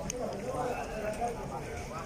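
Faint, distant voices over a low outdoor background murmur.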